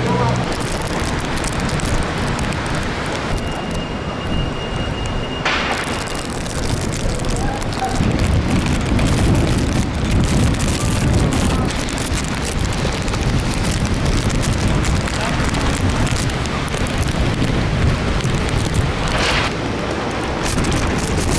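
Strong storm wind gusting and buffeting the microphone, with rain falling on wet pavement. The low rumble of the gusts grows heavier about eight seconds in.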